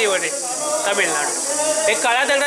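A man's voice speaking in short phrases, over a steady high hiss.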